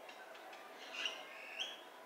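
Small birds chirping: a bright chirp about halfway through and a short call that jumps up in pitch near the end.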